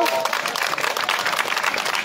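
A crowd applauding, many hands clapping in a steady patter.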